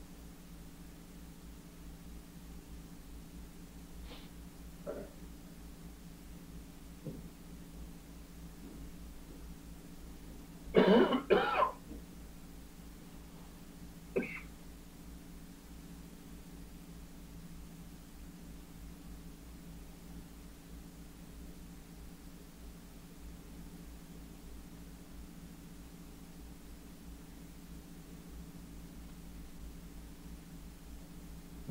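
A person clears their throat twice in quick succession about eleven seconds in, against quiet room tone with a steady low hum. A few faint clicks are heard around it.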